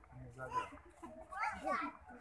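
A toddler's high voice calling out and babbling in short rising and falling sounds, loudest in the second half.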